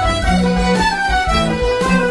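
Folk session band playing a traditional tune together, led by fiddles and melodeons over mandolin, banjo, guitar, cello, clarinet, tin whistle, bodhran and drum kit, with a steady beat.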